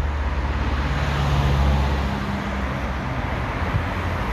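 Street traffic: a motor vehicle's engine rumble and road noise passing close by, swelling toward the middle and easing off in the second half.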